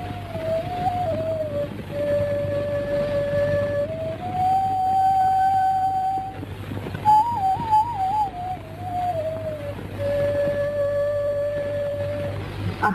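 Background film music: a solo flute playing a slow melody of long held notes, with a quick wavering ornamented run about seven seconds in, over a steady low hum.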